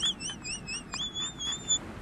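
A high, thin, whistle-like tone warbling up and down about five times a second. About a second in it rises slightly and holds one steady pitch, then stops shortly before the end.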